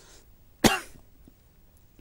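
A man coughs once, a single short, sharp cough a little over half a second in.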